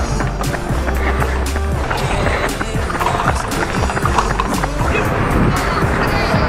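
Background music with a steady beat, over a low rumbling noise.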